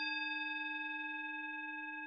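A singing bowl, struck once just before, ringing on: a steady low tone with several higher overtones, fading slowly.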